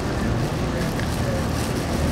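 Steady city traffic noise: a low, even rumble of passing road vehicles.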